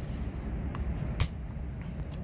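Blue plastic DEF filler cap being screwed onto its filler neck, with light scraping and a sharp click a little over a second in. A steady low rumble sits underneath.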